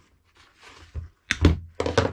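Two dull thunks about half a second apart in the second half: a hand-held angle grinder and its rubber power cord being handled and knocked against a wooden workbench.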